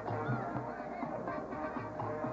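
High school marching band playing: sustained brass chords over a steady low drum beat, about three beats a second.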